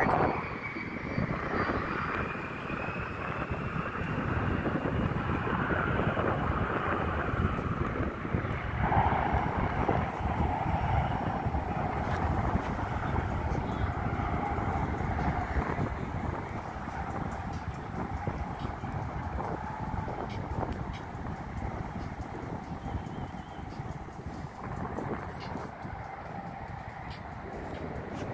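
Jet engines of a Boeing 737-800 climbing away after a go-around, fading, their whine slowly falling in pitch over steady road traffic. From about a third of the way in a steady engine whine holds over the rumble.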